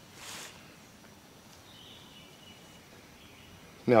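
Quiet outdoor ambience with a faint steady hiss. There is a short soft rustle just after the start, and a faint high-pitched buzz, like a distant insect, in the middle.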